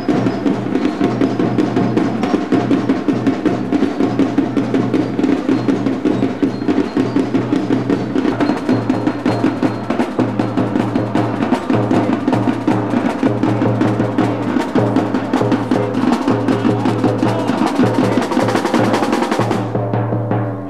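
Sinulog dance music led by percussion: fast, dense drumming with sharp wood-block-like clicks and a pulsing low drum beat, its higher sounds cutting off abruptly just before the end.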